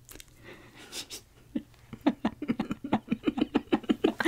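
A woman's held-in laughter building into fast, breathy giggles that grow louder toward the end.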